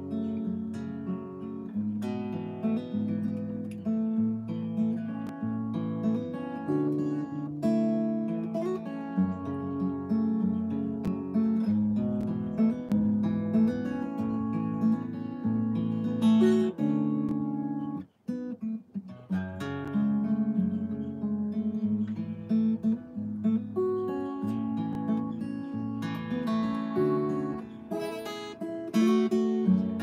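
Solo acoustic guitar playing an intricate picked-and-strummed instrumental part, with a short break about eighteen seconds in.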